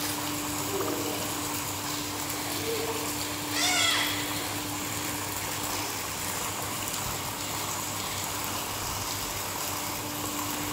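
Steady splashing rush of thin water jets pouring from spouts into a swimming pool, over a faint steady low hum. A child gives one short high call about three and a half seconds in.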